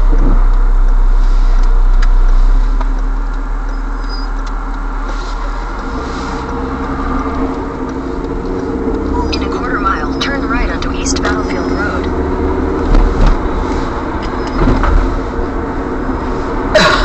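Car cabin noise while driving: steady engine and road noise. A heavy low rumble fills the first couple of seconds and then eases off, and a steadier hum sets in about six seconds in.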